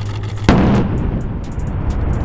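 A mine-clearing line charge detonating: one sudden, loud blast about half a second in, followed by a long rolling rumble. The charge is fired from an M1150 Assault Breacher Vehicle, and its blast pressure sets off buried mines to clear a lane through a minefield.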